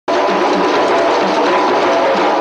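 Ensemble of djembe hand drums playing, the strokes running together into a steady wash of sound with no separate beats standing out.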